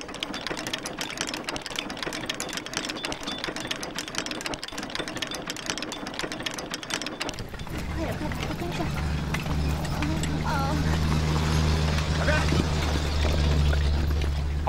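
A dense, rapid clatter for about the first seven seconds, then a low steady engine drone with faint voices of a crowd over it.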